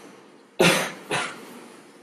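A person coughing twice: a strong cough about half a second in, then a shorter one just after.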